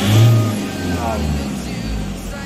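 Diesel engine running near idle, heard from inside the van's cab, with a short swell in its low drone about a quarter second in. The engine is being run to circulate a freshly added oil additive.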